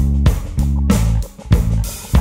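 Instrumental band music: guitar and bass play held chords in short chopped, stop-start blocks over drums, with a brief drop about halfway through.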